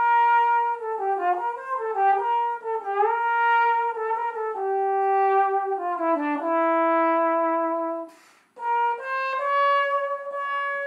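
Solo slide trombone playing a melody high in its range, unaccompanied, the notes stepping and sliding downward to a long held note. About eight seconds in the playing stops for a quick breath, then the phrase resumes a little higher.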